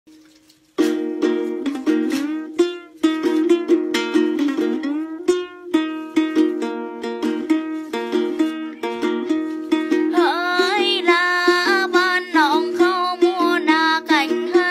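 Đàn tính, the Tày long-necked gourd lute, plucked in quick repeated notes over a steady low string, starting about a second in. About ten seconds in, a woman's voice joins, singing a then folk melody with sliding ornaments.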